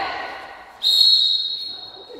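Referee's whistle blown once: a single long, high-pitched blast starting just under a second in and trailing off, stopping play to call a foul or violation.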